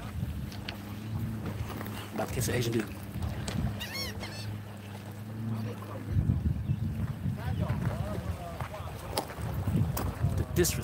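A steady low engine hum that stops about six seconds in, followed by wind and handling rumble on the microphone. A short bird call comes about four seconds in.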